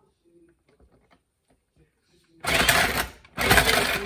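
Electric ice shaver's motor running in two short bursts, about a second each, starting about two and a half seconds in, grinding ice cubes into shaved ice.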